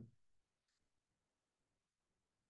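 Near silence, after a spoken word trails off at the very start.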